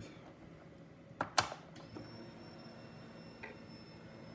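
Ignition key switched on with a freshly wired MoTeC ECU: a small click, then a sharper click just after it as the power relay closes. A faint, steady high-pitched whine follows for about three seconds as the electronics power up.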